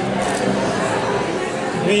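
Indistinct chatter of people in a busy indoor shop, with a voice saying "V" near the end.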